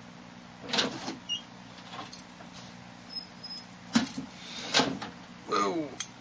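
A few knocks and bumps with some rustling from the webcam being handled close to the microphone. Near the end comes a short voice sound that falls in pitch.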